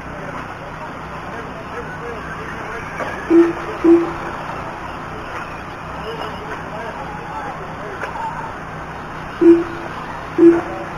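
Two pairs of short, loud, single-pitched electronic beeps, each pair half a second apart and the pairs about six seconds apart, over a steady din of RC racing trucks running on the track.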